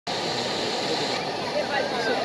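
Steady rushing and splashing of a fountain's water jets, with a crowd's voices chattering faintly over it.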